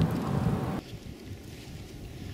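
Wind rumbling on the microphone outdoors. The noise drops off abruptly less than a second in to quiet open-air background with a few faint light ticks.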